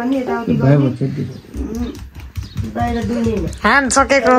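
Voices talking in a small room, with a short rising-and-falling cry near the end. From about one and a half seconds in come soft, repeated low thuds of fists pounding on a bare back during a massage.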